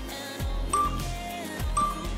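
Two short, high electronic countdown beeps a second apart from a workout interval timer, over background music with a steady bass beat.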